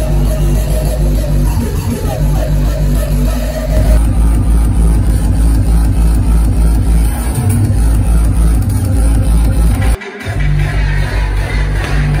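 Loud hardstyle dance music played over a large hall's sound system, driven by a heavy, pounding kick drum; the bass drops out for a moment about ten seconds in, then returns.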